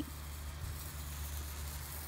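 Handheld sparkler burning with a faint fizzing crackle over a steady low hum.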